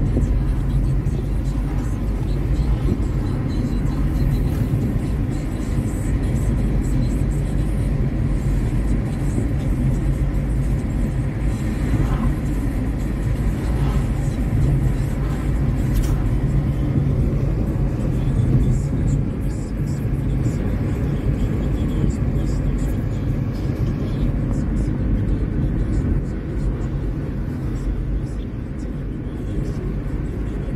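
Steady road and engine rumble heard from inside a moving car's cabin, with no sharp events.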